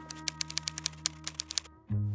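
Typewriter key-clack sound effect, a quick irregular run of sharp clicks, over a low sustained music chord; both cut off shortly before the end.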